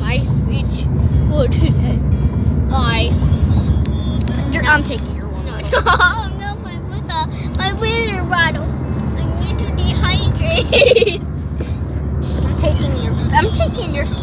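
Steady low road rumble inside a car's cabin. A child's voice makes wavering, sing-song noises over it, most of them in the middle.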